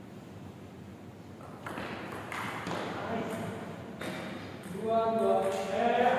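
Table tennis ball knocking off paddles and the table during a rally, followed near the end by a loud, drawn-out shout from a man as the point ends.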